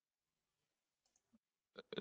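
Near silence: room tone, with a couple of faint clicks just before the end.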